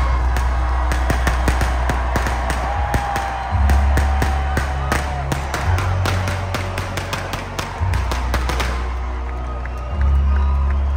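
Live concert music over an arena sound system, with deep held bass notes that change pitch every two seconds or so. Under it a crowd cheers, with many scattered sharp claps or clicks that thin out near the end.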